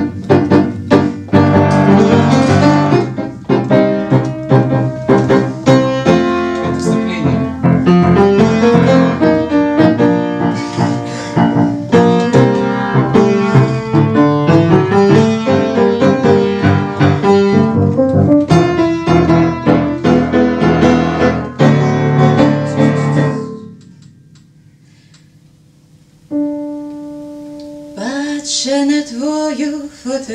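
Upright piano played solo in G minor: quick rising and falling runs over chords, stopping about three-quarters of the way in. After a short pause a single chord is held, and near the end a woman's voice begins singing over the piano.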